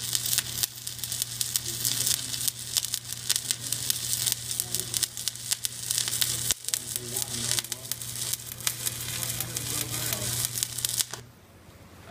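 Stick (shielded metal arc) welding arc crackling steadily over a low hum as an electrode lays a fillet bead on a horizontal T-joint in three-eighths-inch steel plate, with the amperage turned up to about 120 to 125 for better penetration. The arc stops abruptly about eleven seconds in.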